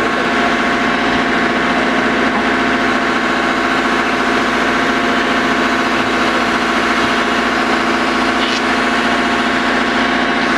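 Hydrema MX14 mobile excavator's diesel engine idling steadily, an even drone made of several constant pitches.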